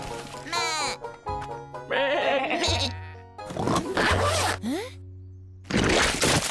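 Cartoon sheep bleats and vocal calls over light background music. A loud burst of noise comes near the end.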